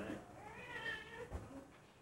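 A faint high-pitched cry that rises and falls over about half a second, like a mew, followed by a brief low thump.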